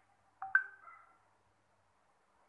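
A single short bird call about half a second in, sharp at the start and fading within half a second.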